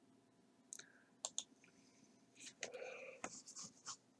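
Near silence with a few faint computer mouse clicks, sharp single ticks, then a soft scratchy rustle in the second half.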